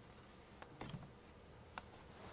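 A few faint, short metallic clicks from a hand tool as a carbon reamer is backed out of a diesel engine's pre-chamber, over quiet room tone.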